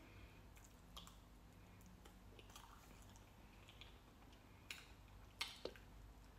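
Near silence with faint eating sounds from a jar of Biscoff cake: soft chewing and a few small clicks, the loudest shortly before the end.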